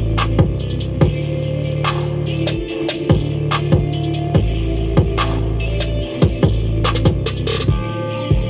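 A hip-hop beat in progress playing back: long deep bass notes that change pitch and drop out briefly twice, sharp drum hits several times a second, and a sustained synth melody above.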